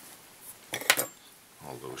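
A few quick, sharp snips of small fly-tying scissors cutting the waste ends of bronze mallard wing fibres, just under a second in.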